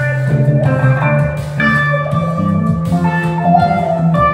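Live instrumental music: an electric guitar playing over keyboards and programmed beats, with held chords above a steady low bass line.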